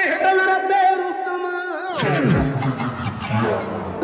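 A Sikh devotional song in a breakdown with the bass cut out. About halfway through, the whole mix slides down in pitch and slows, and the full beat with heavy bass comes back right at the end.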